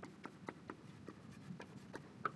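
Chalk tapping and clicking on a blackboard as words are written in capital letters: a quick, uneven string of faint, sharp taps, about three or four a second.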